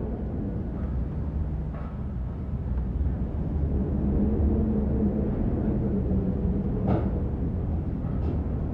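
Low, steady rumbling drone with a faint held tone rising out of it in the middle, and a faint brief tick about seven seconds in.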